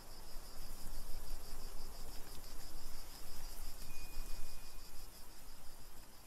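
Forest ambience of crickets chirping in a steady, rapidly pulsing trill over a soft hiss. A brief thin high whistle sounds a little past the middle.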